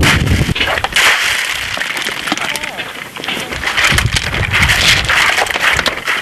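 Heaps of cockle shells clattering as they are handled and sorted by hand, a dense, continuous run of small clicks and rattles.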